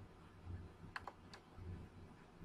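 Three faint, short clicks at a computer about a second in, over a low steady hum; otherwise the room is nearly silent.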